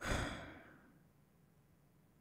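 A person's single sigh, a short breath out close to the microphone that fades away within about a second.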